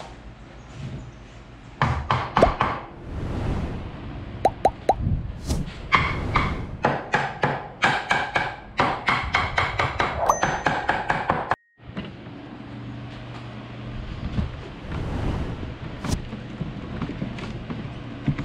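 Hammer striking nails into wooden boards: a few scattered blows, then a fast, even run of strikes with a ringing edge that lasts about five seconds and stops abruptly.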